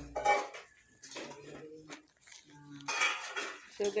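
A fork clinking and scraping against a plate in a few irregular knocks, the sharpest just after the start and another clatter about three seconds in.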